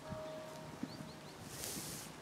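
Horses' hooves striking the sand footing of an arena at a walk, a few soft, dull hoofbeats.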